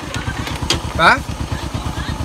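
A small engine running steadily, a dense low putter, with a short spoken exclamation about a second in.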